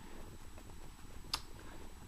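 Quiet room tone with one short, sharp click a little past halfway: a key press on a smartphone as it goes from an app back to the home screen.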